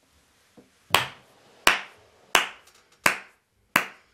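One person clapping slowly: five single claps evenly spaced about two-thirds of a second apart, starting about a second in.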